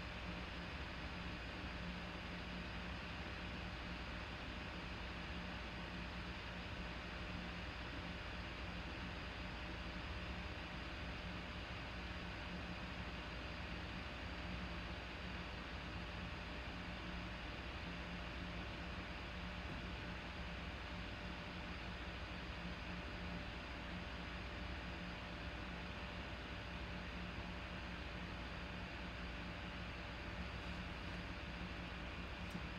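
Steady room tone: an even hiss with a low hum, unchanging throughout, with no distinct events.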